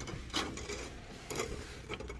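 Louvered window shutter being pulled open by hand: a few short scraping rubs.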